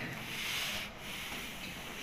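A soft hiss at a handheld microphone held close to the mouth, lasting under a second, then low room noise.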